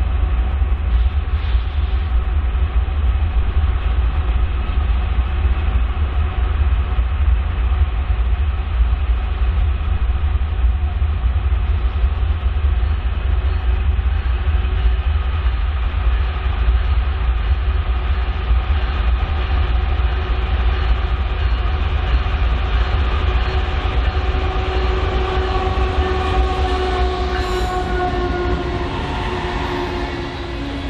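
BNSF grain train approaching and passing behind a diesel locomotive: a steady, heavy engine rumble with whining tones that drop in pitch near the end as the locomotive goes by. Loaded covered hopper cars then begin rolling past.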